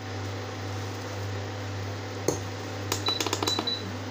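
Milk tea boiling in a steel saucepan on an induction cooktop, over a steady low hum. A steel ladle knocks once against the pan about two seconds in, then clinks quickly against it several times, with a brief metallic ring, near the end.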